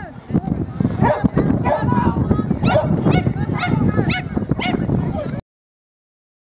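A dog barking repeatedly, about two barks a second, over a steady low rumble; the sound cuts off abruptly near the end.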